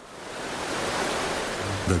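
Rushing water of a gushing waterfall, fading in over the first second and then a steady roar of falling water.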